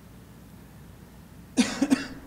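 A person coughing close to a microphone: two or three quick, loud coughs near the end, after quiet room tone.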